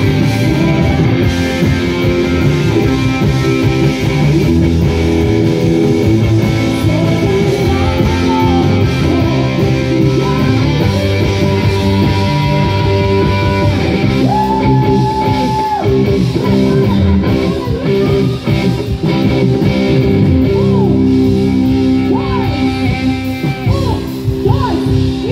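Live band playing a rock-styled song, with electric guitar prominent in the mix and a woman singing. Through the middle, long lead notes are held steady and bent.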